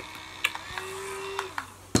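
Small handheld battery fan running with a steady motor hum that slides down in pitch and stops near the end, with a few light clicks.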